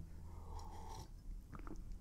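Faint sipping and swallowing of a drink by a man pausing from talking, over a low steady room hum.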